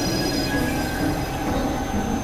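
Experimental electronic synthesizer drones: steady high tones held over a dense, noisy low rumble.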